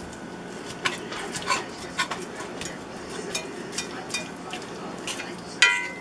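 A metal fork scraping and tapping in a cast iron skillet as it breaks up a lump of ground deer meat, with irregular sharp clicks about every half second to a second.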